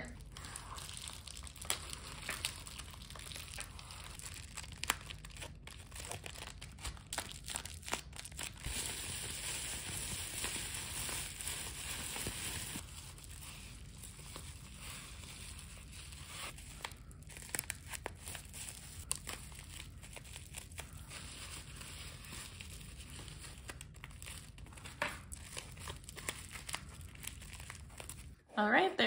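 Plastic bubble wrap crinkling and crackling as crystals are wrapped by hand, in many small, uneven crackles, with a longer, louder rustle from about nine to thirteen seconds in.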